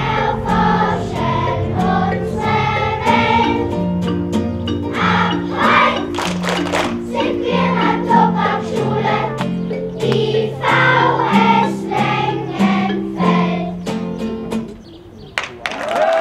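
Children's choir singing a song together with a guitar accompaniment playing a stepping bass line. The song ends about a second and a half before the end.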